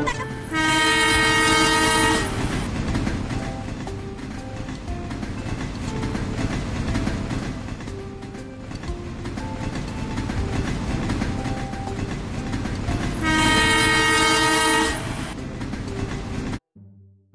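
Two blasts of a train horn, each about two seconds long, one near the start and one near the end, with the steady clatter of a toy train running along its track in between.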